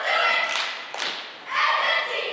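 A group of young cheerleaders shouting a cheer in unison, with two sharp hits about half a second apart in the middle.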